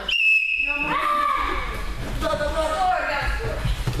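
A single short whistle blast, steady and high, lasting about half a second right at the start, followed by voices and chatter in a large echoing hall.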